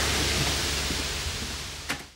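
A steady hiss from a smoking, short-circuited lock mechanism, fading slowly over a low hum. A short click comes near the end, and then the sound cuts off.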